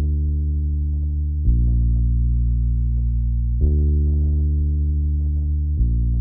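A sampled five-string electric bass (FL Studio's 5 String BopBass) plays a slow, deep bassline on its own, alternating long held D and A-sharp root notes. The note changes about every two seconds, three times in all.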